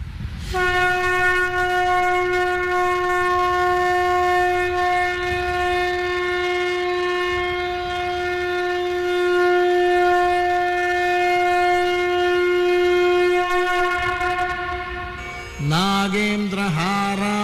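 A conch shell (shankha) blown in one long, steady note lasting about fourteen seconds, sagging slightly in pitch before it stops. Chanted singing begins right at the end.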